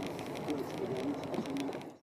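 Rain and wind noise: a steady hiss with many small pattering ticks of raindrops, cut off abruptly at the very end.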